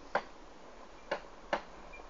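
Three short, sharp clicks, the first right at the start and the last two about half a second apart.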